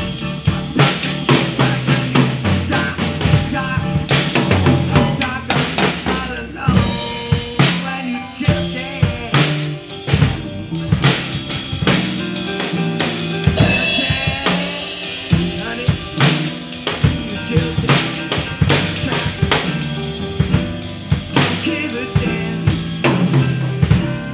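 A drum kit with Zildjian and Sabian cymbals, played live to a recorded rock song during an instrumental passage. It holds a steady beat of bass drum, snare and cymbals over the band's steadily moving low notes.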